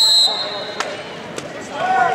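A referee's whistle blast that cuts off about a quarter second in, followed by arena background noise with a few sharp knocks and a voice near the end.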